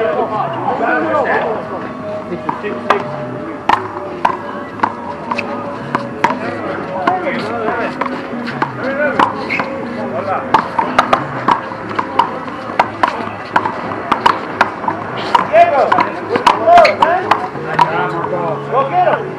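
Handball rally: the ball is smacked by hand and rebounds off the wall and court in a string of sharp whacks, coming thicker and louder in the second half. Voices and music run underneath.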